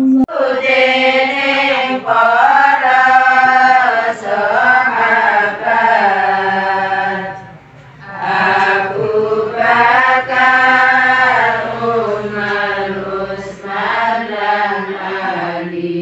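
A group of women chanting in unison, unaccompanied, in two long drawn-out phrases with a short break about eight seconds in. The frame drums of the ensemble are not being played here.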